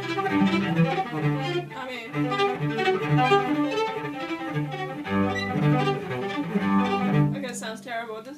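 Cello played with a bow: a run of sustained notes, one after another, that stops about seven seconds in.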